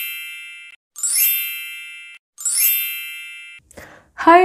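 A bright, bell-like chime sound effect struck three times, about a second and a half apart. Each ding rings down and is then cut off abruptly.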